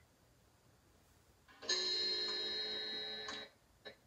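A recorded chime sound played back: one ringing chord made of many held tones, starting about a second and a half in and cut off sharply after under two seconds. It is the chime meant to signal midnight.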